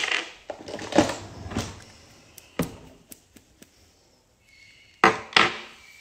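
Makeup items being handled: a string of sharp clicks and knocks as compacts, a drawer and brushes are picked up and set down, with a louder pair of knocks near the end.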